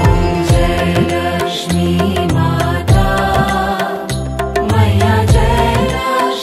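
Hindu devotional aarti music for the goddess Lakshmi, with pitched melody instruments, bass and a steady percussion beat.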